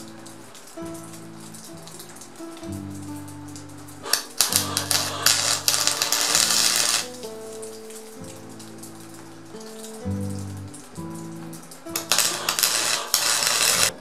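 Two bursts of wire-feed welding arc crackle, each a few seconds long, as tack welds go onto a thin steel sheet part: the first about four seconds in, the second near the end. Background music plays throughout.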